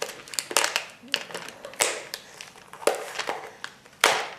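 Hands handling a taped clear plastic tub full of glass marbles: irregular crinkling and sharp clicks of the plastic lid and tape, with marbles shifting inside.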